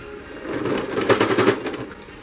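Electric domestic sewing machine stitching piping onto fabric: a quick, even burst of needle strokes, about a dozen a second, starting about half a second in and stopping shortly before the end.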